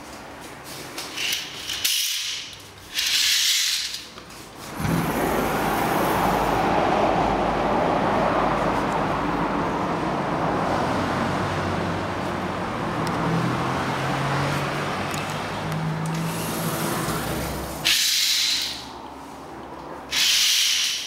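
Rustling and sliding as a curtain is drawn aside and a balcony door is opened, then steady city street traffic noise from below. The traffic noise drops away suddenly near the end as the door is shut, with more rustling and sliding.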